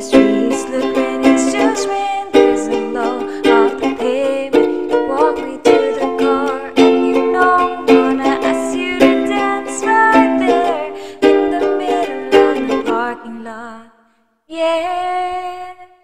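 A woman singing to a strummed ukulele. The strumming and singing fade out about 13 seconds in, and after a short silence a single held note sounds briefly near the end.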